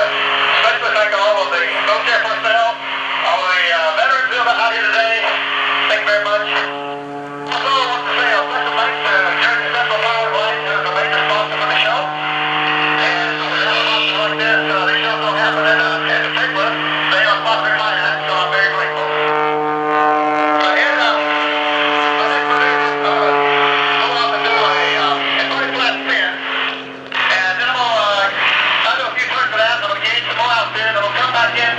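A man talking over a crackly radio link from a light aerobatic plane's cockpit, with the steady drone of the MX-2's engine and propeller underneath, its pitch shifting slightly a few times.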